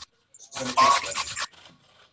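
A short burst of voice about half a second in, then faint scratchy rasping near the end: sweet potato being grated on a stainless box grater.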